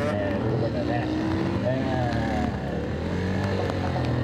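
Aprilia SXV450 V-twin engine revving up and down as the bike is ridden through tight turns, with a rise in pitch about a second in.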